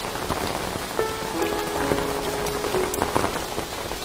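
Steady rain falling, with a few soft held music notes sounding over it.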